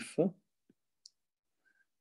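Two faint, brief clicks of a stylus tapping an iPad screen while writing, about a second in, after a short spoken word.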